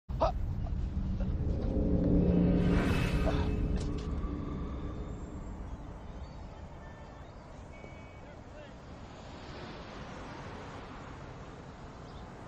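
Low, rumbling dramatic score with sound effects, swelling to a whoosh about three seconds in, then fading to a quiet, steady background.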